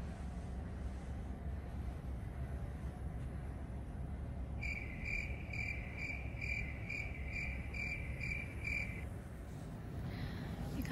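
Steady low hum inside a ferry's passenger lounge. About halfway through, a high-pitched beeping starts, about two and a half beeps a second, and stops after about four seconds.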